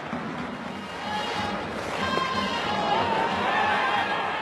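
Baseball stadium crowd noise with cheering music carrying a wavering melody over it.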